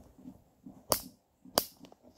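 Two sharp knocks, about two-thirds of a second apart, with a fainter click just after the second: handling noise as things are moved about.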